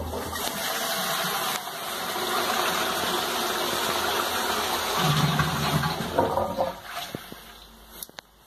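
1950s high-level Thomas Dudley bell syphon cistern flushing, its water rushing down the flush pipe and through the toilet pan, then dying away near the end as the flush finishes. The old cistern still flushes properly.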